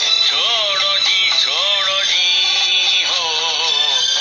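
A song: a single singing voice with long, gliding, ornamented notes over backing music.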